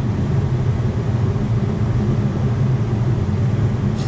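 A steady, loud low machine hum with no change in pitch or level and no distinct tool clicks.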